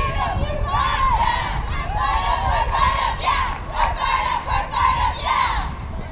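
A team huddle cheer: a group of high-pitched young voices chanting and shouting together in unison, ending just before the huddle breaks.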